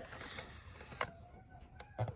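Quiet room with faint handling noise: one sharp click about a second in, a couple of small ticks near the end, and a faint steady tone underneath.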